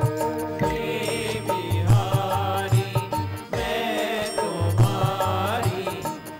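Hindu devotional chanting sung to music with a steady, repeating beat, with hand-clapping in time.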